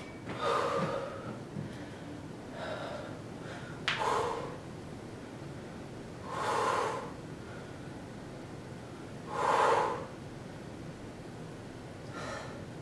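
A woman breathing hard from the exertion of squats: five heavy breaths, about one every two to three seconds, with the last two the loudest. A short sharp tick comes just before the third breath.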